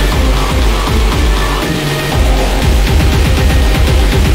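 Speedcore electronic music with a very fast, steady kick-drum beat under dense synth layers; the beat thins briefly about halfway through.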